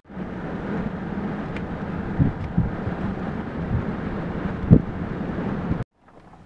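Road noise inside a moving car: a steady low hum with rushing wind, broken by a few short thumps, the loudest near the end. It cuts off abruptly just before the end.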